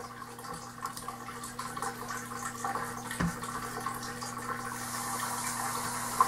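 A steady low electrical hum under a hiss, with scattered small clicks and a soft knock about three seconds in.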